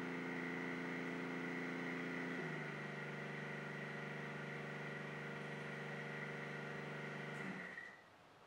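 Brushless DC servo motor running under field-oriented current control, giving a steady whine of several tones. The pitch steps down about two and a half seconds in as the motor slows from roughly 1700 to 1500 RPM, and the whine winds down and stops near the end as the command is brought to zero.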